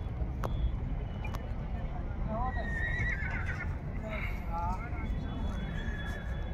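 A horse neighing: a wavering, pitched whinny about two and a half seconds in, with shorter calls near the five-second mark, over a steady low rumble and a couple of sharp clicks early on.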